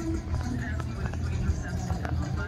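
Low, uneven rumble, with faint voices and music underneath.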